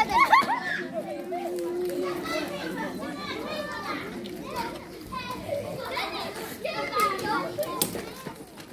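Children playing, their voices calling out and chattering over one another, with a loud high cry right at the start.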